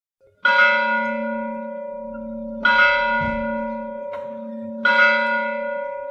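A bell struck three times, about two seconds apart, each strike ringing on and fading slowly into the next.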